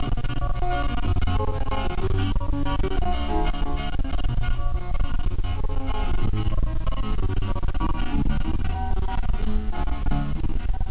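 Music playing from a CD/cassette stereo's radio through its speaker, steady throughout. The stereo is running off a small homemade two-transistor transformer inverter, drawing about nine watts.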